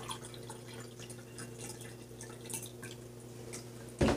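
Water pouring from a plastic gallon jug into a glass goblet: faint trickling and dripping splashes, over a steady low hum.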